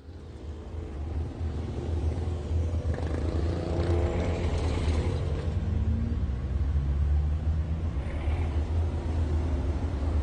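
A steady, low engine rumble fades in over the first couple of seconds. Faint higher tones rise and fall about halfway through.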